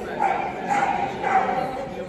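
A dog barking three times, about half a second apart.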